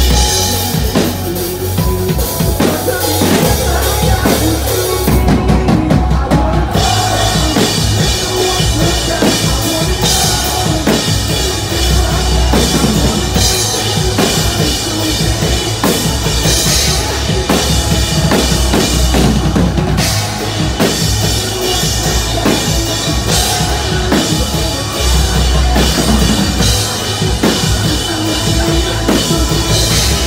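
A post-hardcore band playing live at full volume: a pounding drum kit with bass drum and snare up front, under distorted guitars and bass guitar.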